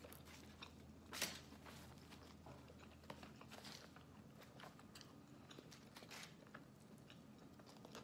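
Faint close-up chewing of a mouthful of burrito: soft, wet mouth clicks and smacks, one a little louder about a second in.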